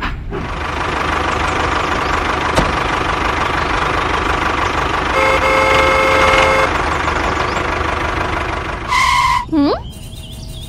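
Steady engine-like running noise throughout. About five seconds in a horn sounds for about a second and a half; near the end a short steady beep is followed by a swooping up-and-down glide.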